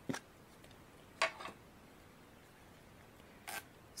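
Three brief, quiet handling sounds of craft supplies (an ink pad and stamping tools) being picked up and set down on the desk: one right at the start, one just over a second in, and one about three and a half seconds in.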